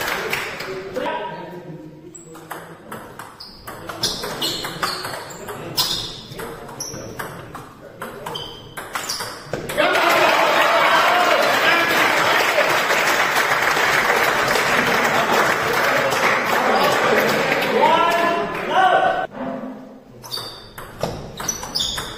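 Table tennis rally: the ball clicks sharply off the bats and table in quick succession. About ten seconds in, the audience breaks into loud applause and cheering for around nine seconds, and ball hits start again near the end.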